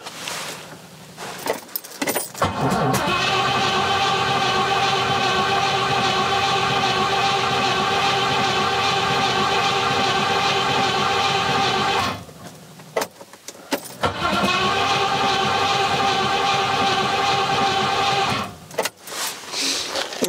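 Rover 4.6-litre V8 turning over on the starter motor without firing, in two long bursts: one of about nine seconds, then a pause, then one of about four seconds. The engine will not catch because fuel is not reaching the cylinders.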